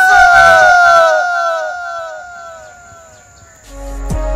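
A man's long anguished scream, loud at first and sliding down in pitch as it echoes and fades over about three seconds. Music with a steady low bass comes in near the end.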